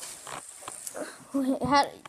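Faint handling clicks of fingers on a spinning fidget spinner, then a boy's voice, louder, in the second half.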